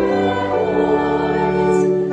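Choir singing slow music in long, held notes, the chord changing about half a second in.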